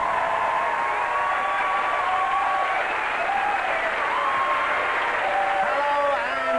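Studio audience applauding, with the held final note of the theme music fading out during the first few seconds.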